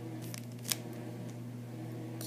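Sports card packs being handled: light rustles of the wrappers and one sharp click about two-thirds of a second in, over a steady low hum.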